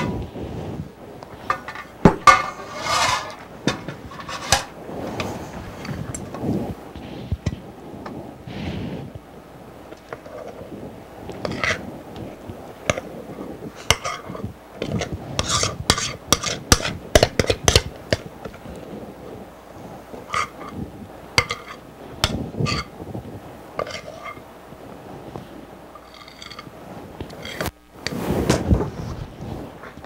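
A spoon scraping and knocking against a mixing bowl and a metal loaf pan as thick bread batter is scooped into the pan, with many short sharp clinks, thickest in the middle of the stretch.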